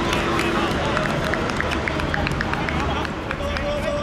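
Footballers shouting and calling to each other across an outdoor pitch, over a steady background din, with a string of short ticks through the middle.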